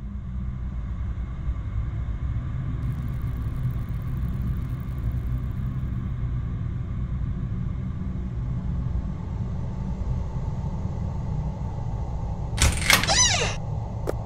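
A low, steady rumble that swells slightly, with a brief sweeping sound falling in pitch near the end.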